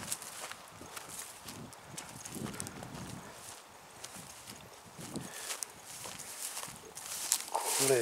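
Footsteps and rustling of a person walking through long grass and bamboo undergrowth: soft, irregular light clicks and swishes.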